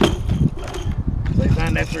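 Indistinct talking over a steady low rumble, with a single sharp knock right at the start.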